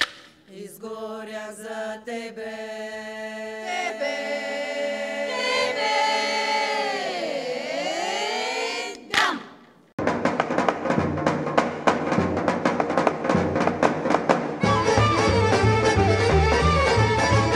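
Female folk choir singing a cappella in close harmony, holding a chord that slides down and back up in pitch and ends with a short loud cry about nine seconds in. After a brief gap, instrumental folk music with a steady beat starts and grows fuller with a low drum near the end.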